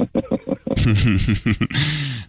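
Radio jingle: quick, stylised voices over music.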